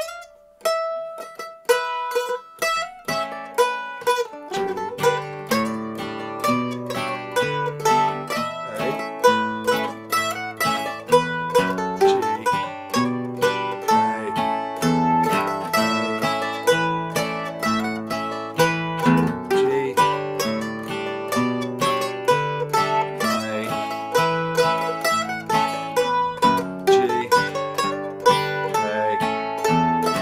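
An old-time tune in A modal played at slow-jam pace on plucked string instruments. A single plucked melody line starts alone, and about three seconds in a guitar joins with lower accompanying notes, both then playing steadily.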